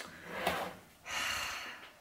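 A woman's two noisy breaths: a short sharp one about half a second in, then a longer, hissy breath out.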